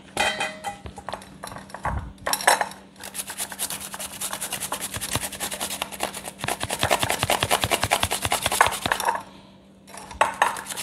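Cucumber being grated on a handheld metal grater: a fast, steady run of rasping strokes that starts about three seconds in and stops near the end. A few knocks come before it.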